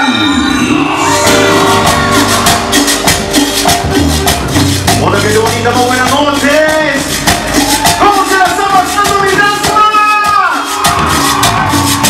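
Live cumbia band playing, kicking in about a second in: a fast, steady scraped and shaken percussion rhythm over congas, drum kit and horns.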